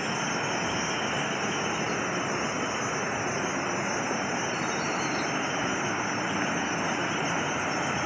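Steady rushing of a waterfall, an even wash of falling water that holds the same level throughout.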